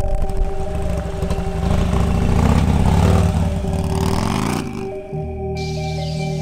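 Harley-Davidson motorcycle engine revving and accelerating away on a gravel track, getting louder to a peak about three seconds in, then cut off abruptly just before the five-second mark, over steady ambient background music.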